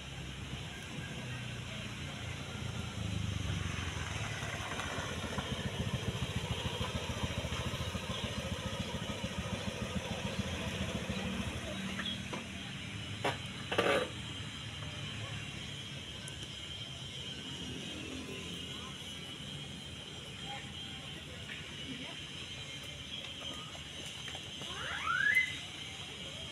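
A motor vehicle's engine running, swelling about three seconds in and easing off after about twelve seconds, with a short sharp squeal about fourteen seconds in.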